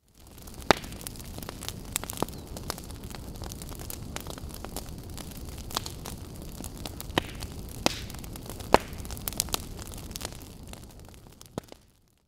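Fire burning: a steady low rumble with scattered sharp crackles and pops, fading out near the end.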